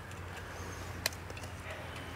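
Faint sounds of a fillet knife working through a gag grouper's head meat, with one sharp click about a second in.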